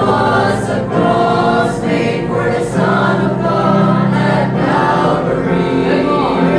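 Mixed choir of women and men singing a gospel song together.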